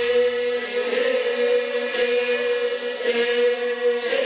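Ritual chanting on one steady drone pitch, the voice or voices holding a long note rich in overtones and renewing it about once a second.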